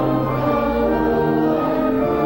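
A hymn sung by a congregation, accompanied on a church organ: held chords moving slowly from one to the next.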